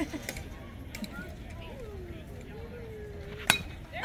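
Baseball bat hitting a pitched ball once, a sharp metallic ping about three and a half seconds in, with faint voices in the background before it.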